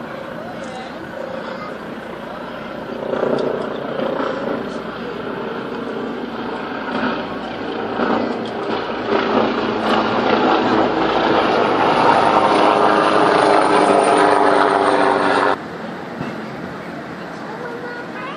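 Helicopter flying overhead, its rotor and engine sound building steadily louder over several seconds, then cutting off suddenly a couple of seconds before the end.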